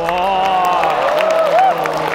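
Crowd cheering and whooping over clapping, with several voices gliding up and down in long shouts.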